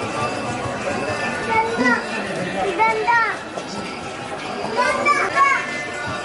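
Crowd of people outdoors, a steady babble of voices broken by short, high-pitched shouts and squeals about two, three and five seconds in.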